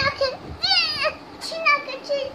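A young child's high-pitched voice, with two short sliding vocal sounds and a brief click between them.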